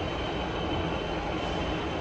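Steady mechanical rumble and rush of air inside a delivery truck's cab, with a faint thin high whine running through it.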